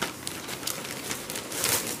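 Plastic wrapping around cones of crochet yarn crinkling as they are handled, in a quick scatter of small crackles.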